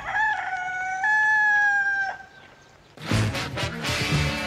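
A rooster crowing once: a long, held call that steps up in pitch about a second in and ends about two seconds in. After a short pause, music with guitar cuts in near the end.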